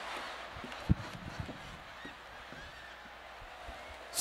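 Audience laughing, fading gradually, with a single thump about a second in.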